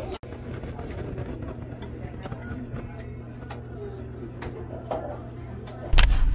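Steady low hum of a car, heard from inside the cabin, with a few faint clicks.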